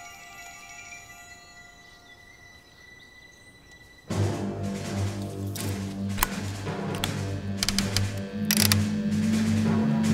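Faint music dies away, then about four seconds in a loud low hum comes on abruptly with a run of sharp clicks, and it keeps building louder: a giant speaker rig powering up as switches are flipped on its control panel.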